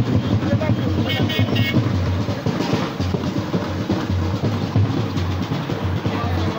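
Street procession crowd sound: voices and vehicle noise over music with a drumbeat, and a short pulsing high tone about a second in.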